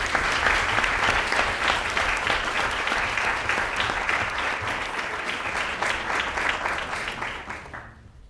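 Auditorium audience applauding, starting loud and gradually fading away near the end.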